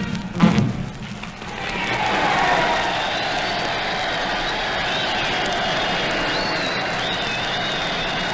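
A dance band's final notes end about half a second in, then a ballroom audience applauds steadily, heard on a 1945 radio broadcast recording.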